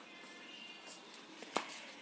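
Faint background music, with one sharp knock about one and a half seconds in: a ladle knocking against the pot.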